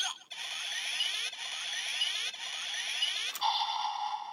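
Electronic finisher sound effect from a Kamen Rider Ex-Aid DX toy gun's speaker, with the Jet Combat Gashat inserted: falling synthetic sweeps about once a second, then a sharp blast about three and a half seconds in that turns into a held tone.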